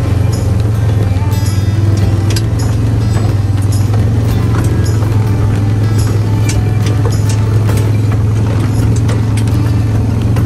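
A vehicle's engine runs in a steady low drone while driving through tall grass and brush, with scattered knocks and rattles.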